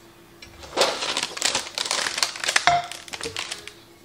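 Clear plastic wrapping crinkling as it is pulled off new ceramic nonstick frying pans, starting about a second in, with a knock of a pan about two-thirds of the way through.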